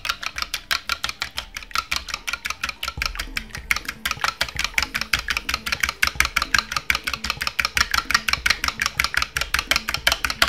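A fork beating an egg in a small clear bowl: fast, even clicks of the fork against the bowl, about seven a second.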